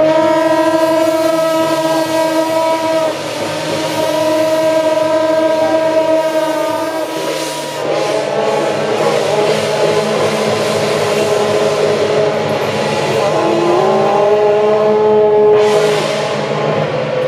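Temple-procession horns holding long, steady notes, several pitches at once, with one note sliding up about two-thirds of the way through. A few cymbal crashes sound beneath them.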